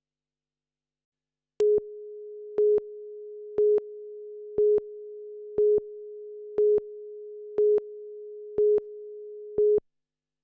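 Broadcast countdown leader tone: one steady mid-pitched tone starting about a second and a half in, with a louder short beep once a second, nine beeps in all, that cuts off just before the end.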